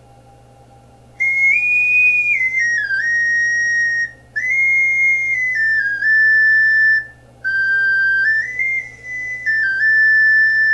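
Focalink Soprano C plastic ocarina playing a short tune in its high notes, pure whistle-like tones stepping up and down in three phrases with brief breath gaps, starting about a second in. The high notes are slightly loud but not unbearable.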